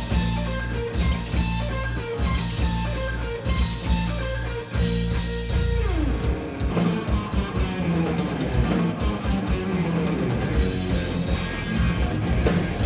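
Live hard rock played by electric guitar, bass guitar and drum kit, with no singing. About halfway through a note slides steeply down in pitch before the band plays on.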